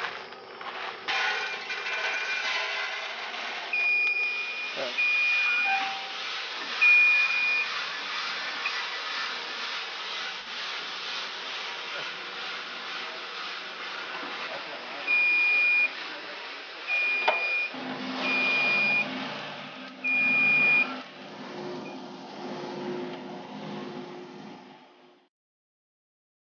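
Coffee drum roaster running with beans tumbling in the turning drum: a steady whirring hiss. It is broken by about seven short, high electronic beeps in two groups. A lower hum joins for the last few seconds before the sound cuts off.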